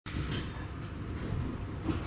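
Interior noise of a Hamburg S-Bahn class 472 electric multiple unit: a steady low rumble and hum from the train, with faint thin high tones above it and two brief hisses.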